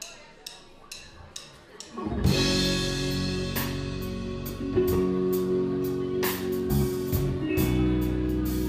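A live band starts a slow number. For about two seconds there are only light drum-kit ticks, about two a second. Then electric guitar, bass and drums come in together and play on.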